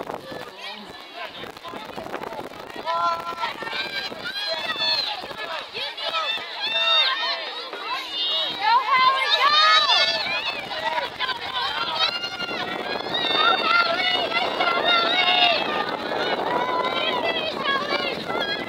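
Spectators yelling and cheering runners on near the finish, many high voices shouting over one another, loudest about halfway through and swelling again later.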